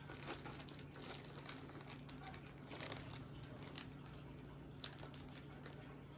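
Clear plastic basket wrap crinkling faintly in scattered small crackles as items are pushed in among it, over a low steady hum.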